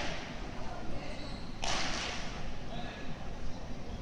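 Echoing sports-hall ambience with faint background voices, and a short rushing burst of noise about one and a half seconds in.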